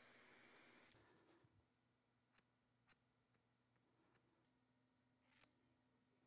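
Near silence: room tone, with a faint hiss that fades out in the first second and a few very faint ticks.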